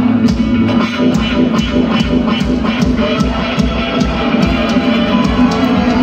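A live band playing an instrumental passage over a concert PA, with a steady, even beat.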